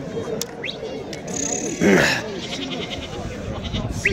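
A goat bleats once, loudly and briefly, about halfway through, over a steady background of men's voices.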